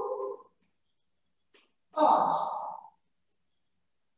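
A person's voice: two short vocal sounds with no clear words, the first trailing off about half a second in, the second about two seconds in and lasting about a second.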